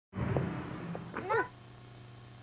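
Camcorder recording starting with a burst of hiss and steady electrical hum, then about a second in a brief high-pitched cry that bends up and down in pitch.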